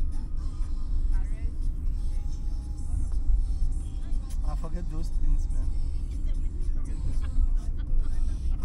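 Car driving along a road, heard from inside the cabin: a steady low rumble of engine and tyres, with faint voices and music underneath.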